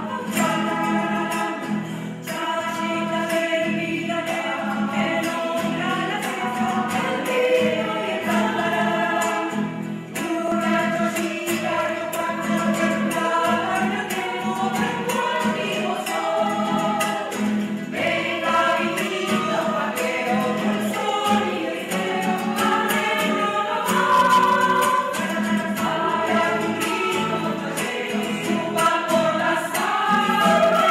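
A choir singing, many voices together in harmony, with the sung notes changing throughout.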